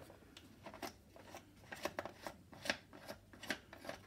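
Faint, irregular clicks and small scrapes of fingers unscrewing the screw knob on the side of a Bumprider sibling board's hinge to free its tilt adjustment.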